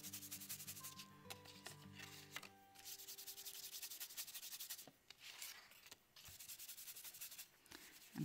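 Faint, fast scrubbing of a round blending brush working ink onto card stock over a paper mask, in short repeated strokes.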